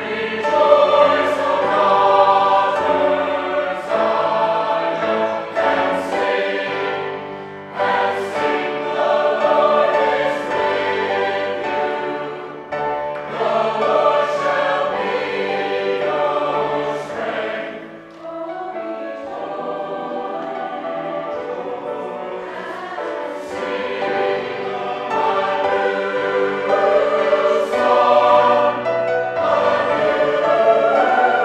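Mixed-voice church choir singing with grand piano accompaniment. The singing drops away to a softer passage a little past halfway, then builds louder again near the end.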